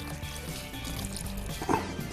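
Quiet background music over water sloshing and trickling as a cloth is wrung out by hand in a plastic basin of wash water.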